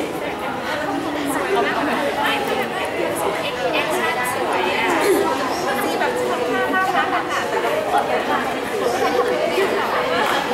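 Several people talking at once: a steady, lively hubbub of overlapping voices from a small group close by.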